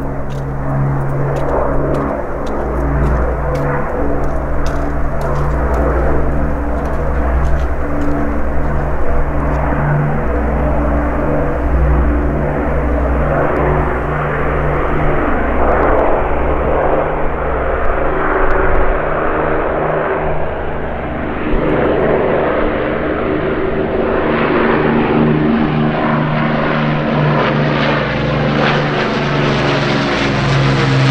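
Avro Lancaster's four Rolls-Royce Merlin V12 engines droning steadily as the propeller-driven bomber flies past low overhead. Near the end the drone takes on a sweeping, phasing quality as the aircraft comes over.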